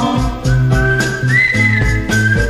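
Instrumental break in a 1972 Mandarin pop song: a high, held melody line that steps up in pitch about halfway through, over bass and a steady beat, with no singing.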